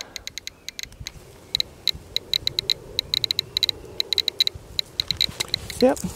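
Handheld Geiger counter clicking rapidly and irregularly, several clicks a second and bunching closer together in the middle, as it is held over a bag of uranium ore: the click rate shows the ore's radioactivity.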